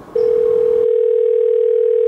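A telephone ringback tone heard in the handset: one steady ring of about two seconds, starting just after the beginning and cutting off sharply at the end, the sign that the call is ringing through at the other end.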